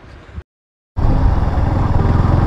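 A brief dead-silent gap about half a second in. From about a second in comes the loud, steady low rumble of a Yamaha MT-15 (a 155 cc single-cylinder) running under way, with road noise.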